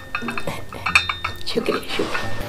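Light clinking of china crockery, a quick run of small taps that ring briefly.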